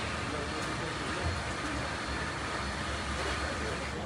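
Steady outdoor background noise with a low rumble, and faint distant voices now and then.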